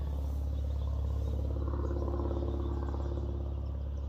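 A steady low mechanical hum, like an idling engine or motor, running without a break; a slightly higher tone in it grows a little stronger about the middle.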